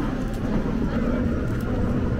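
Steady low rumble of an airliner cabin, the aircraft's air-conditioning and systems running.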